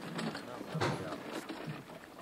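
Low, indistinct voices in a room, with two sharp knocks, one just under a second in and one about a second and a half in.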